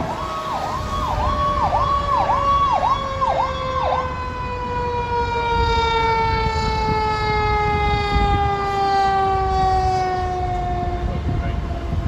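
Fire engine's sirens. A siren sweeps rapidly up and down about twice a second and stops about four seconds in, while a second siren tone falls slowly and steadily in pitch throughout, over the low rumble of the truck.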